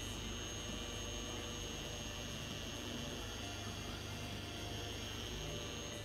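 Small random-orbital (non-forced-rotation) polisher with an orange cutting foam pad running steadily on car paint, a constant motor whine over a low hum.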